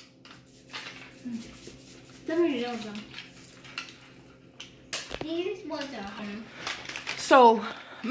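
Light clatter and sharp knocks of plastic tubs, spoons and foil baking cups being handled on a wooden table, with children's voices now and then, loudest near the end.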